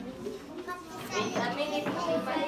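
Indistinct chatter of children's and adults' voices in an audience.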